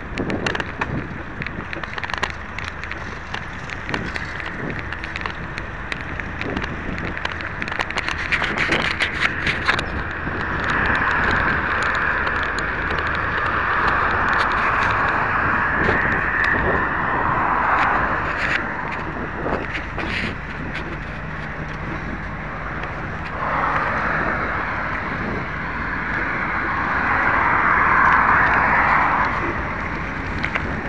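Minerva mountain bike being ridden with the camera fixed to it: a rapid clatter of rattles and clicks over bumps for the first ten seconds, then a rushing hiss of rolling and passing air that swells twice, once about ten seconds in and again more loudly from about twenty-three seconds.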